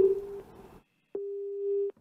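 Telephone busy tone on a call that has just been disconnected: a steady low-pitched beep switching on and off, the tail of one beep fading in the first half second and another lasting most of a second near the end.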